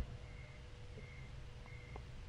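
Faint room tone in a pause between speech: a low hum with a thin steady whine, and a few very faint short high chirps.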